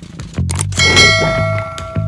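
A metallic bell-like ding sound effect, from the notification bell of a subscribe-button animation, strikes just under a second in and rings on for about a second, over background music.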